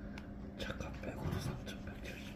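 Faint, low voices murmuring over a steady low hum in a small room, with a few soft clicks.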